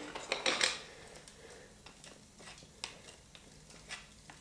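A thin metal tool prodding and scraping at freshly poured bronze in a sand mould: light metallic clicks and scrapes, a quick cluster near the start, then a few single ticks spread out.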